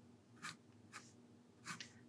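Graphite pencil (Faber-Castell 9000) drawing on paper: a few short, faint scratchy strokes, about half a second, one second and nearly two seconds in, as a line is sketched.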